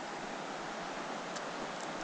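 A mountain trout stream running, a steady even rush of flowing water.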